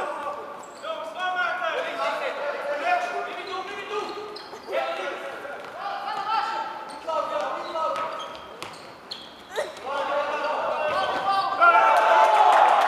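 Voices shouting and calling in a large, echoing sports hall, with a few sharp thuds of a futsal ball being kicked and bouncing on the wooden court.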